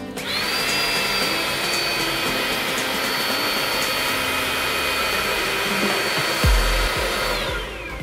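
Xiaomi Mi Handheld Vacuum Cleaner 1C running with its brush nozzle, a steady high motor whine. It spins up just after the start and winds down, falling in pitch, near the end as it is switched off.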